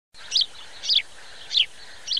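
A bird chirping: three short, high, falling chirps about half a second apart, over a faint steady hiss.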